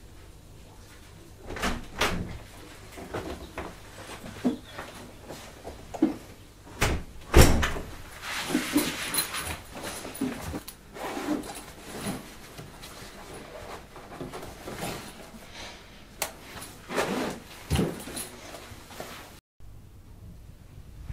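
A run of irregular knocks and bangs, the loudest about seven seconds in, with short scraping and rattling sounds between them.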